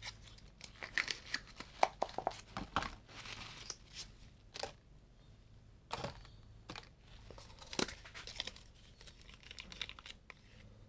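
Irregular rustling, crinkling and light clicks of gloved hands handling paint containers and their lids.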